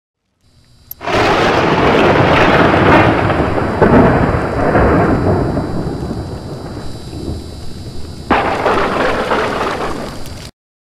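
Thunder rolling over steady rain. It starts suddenly about a second in and slowly dies away, then a second loud thunderclap breaks in near the end.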